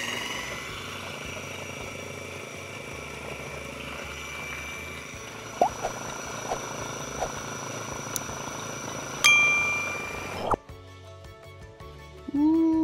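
KitchenAid food processor running steadily, blending hummus while oil is streamed in through the feed tube; it stops suddenly about ten seconds in. Background music plays, with a bright ding just before the stop.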